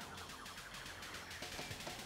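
Background music with a steady beat and a light repeating melody.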